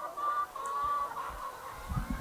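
A flock of laying hens calling: several drawn-out calls in a row, each held at a steady pitch.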